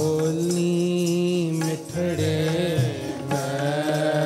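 Sikh kirtan music: a harmonium playing long held notes, accompanied by tabla. The notes change briefly about two seconds in before settling again.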